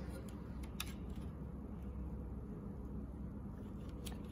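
Low steady background hum with a couple of faint clicks in the first second, from fingers handling the ink dampers on a UV printer's print head.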